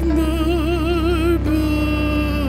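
Operatic singing voice holding a long note with a wide vibrato, then moving to a new, steadier note about one and a half seconds in, over a low sustained drone.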